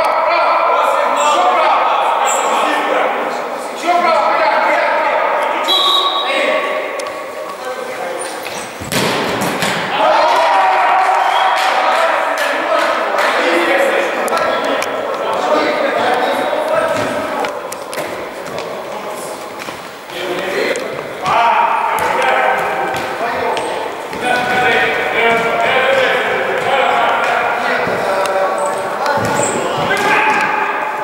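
Indistinct shouts and calls of futsal players echoing in an indoor sports hall, with the thuds of the ball being kicked and striking the hard court; one loud strike about nine seconds in.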